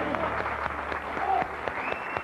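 Audience applauding as the mariachi band's last chord fades out in the first part, with a few voices among the clapping.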